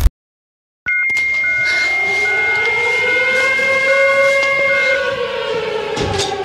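After a brief silence, an air-raid siren wails up slowly and falls back, under a steady high tone and short beeps repeating about once a second. These are the alarm sounds of the emergency-broadcast intro to an electronic bass-music track. The steady tone cuts off near the end.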